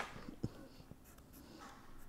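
Faint scratching of a pen on paper, with a light tap about half a second in.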